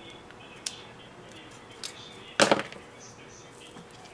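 Quiet handling sounds of card stock and a craft pen on a cutting mat: a few faint clicks and taps, with one louder short sound about two and a half seconds in.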